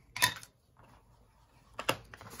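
Plastic lid of a Distress Ink pad being pulled off and set down on the cutting mat: two sharp clacks, one just after the start and one near the end.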